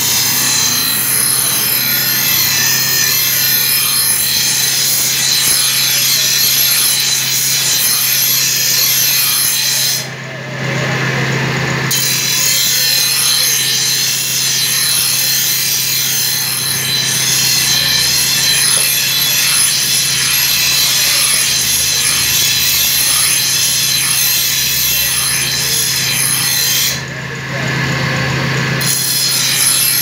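A curved steel knife blade being sharpened on a spinning abrasive grinding wheel: a steady, harsh grinding hiss of steel on stone over the hum of the machine. The grinding stops twice for a second or two, about ten seconds in and near the end, as the blade comes off the wheel, leaving only the hum.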